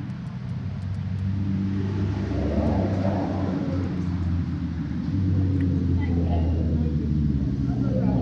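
Road traffic passing on the street: a low engine hum that builds over the first couple of seconds and stays loud.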